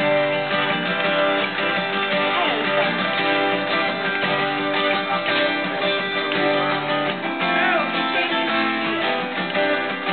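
Two acoustic guitars strummed together, playing chords in a steady rhythm.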